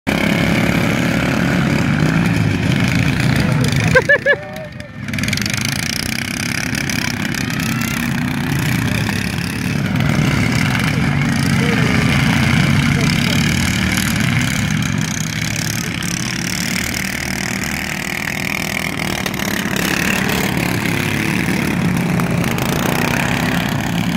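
Several ride-on lawn mowers' small petrol engines running as they race, a steady engine drone. About four seconds in there is a sharp knock, then the sound drops away for about a second.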